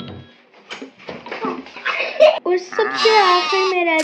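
A few short clicks and knocks from the door handle and latch of a wooden door, then from about two and a half seconds in a child's voice, drawn out and wavering.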